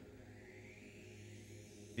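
Near quiet: a faint steady hiss with a low hum underneath, in a pause of the soundtrack.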